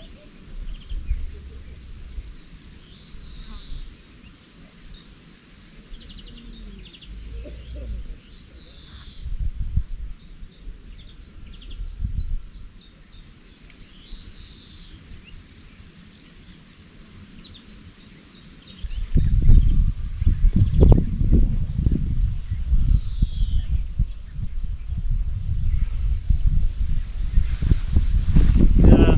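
A songbird sings a short, repeated downward-sweeping phrase every five or six seconds, with quieter chirps and trills between. About two-thirds of the way in, a loud low rumbling noise sets in and stays, drowning out the birdsong.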